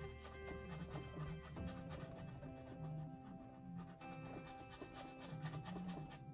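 A small paintbrush scrubbing acrylic paint onto a stretched canvas in quick, repeated short strokes, over background music.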